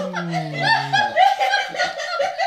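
A man and a woman laughing hard together: a low, falling laugh from the man through the first second over the woman's higher, rapid laughter.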